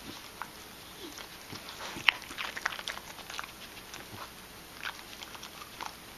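A dog chewing and crunching carrots from a bowl: scattered wet crunches and clicks, the sharpest about two seconds in, followed by a quick run of crunches.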